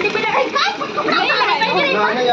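Several people's voices talking and calling out over one another, some of them high-pitched.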